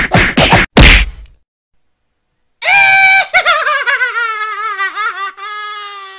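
A rapid, even run of whacking punch sound effects that ends with a loud hit about a second in, then dead silence, then a long wailing tone that holds, wavers and slowly falls in pitch as it fades.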